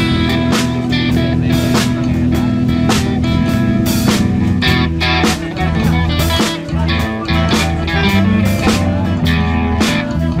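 Live rock band playing an instrumental passage with no singing: electric guitar and bass guitar over a steady drum-kit beat, at a full, even loudness.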